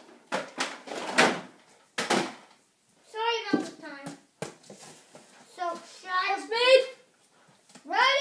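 Children's voices calling out in a small room, with a few short breathy noise bursts in the first two seconds and a couple of sharp clicks partway through.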